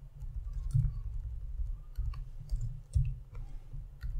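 Computer keyboard keystrokes: a handful of scattered, irregular clicks over a steady low rumble.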